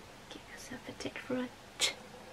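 A woman speaking quietly, almost in a whisper, in short broken fragments, with one short, sharp hiss near the end.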